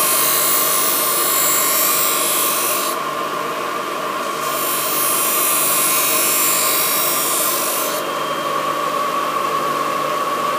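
Puukko knife blade ground on the spinning wheel of a lamella sharpening machine: a harsh grinding hiss over the machine's steady whine, in two passes. The first pass ends about three seconds in, and the second runs from about four and a half to eight seconds, with only the running machine heard between them.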